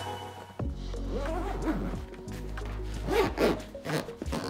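Zipper of a padded guitar gig bag being pulled open, in two stretches, over steady background music.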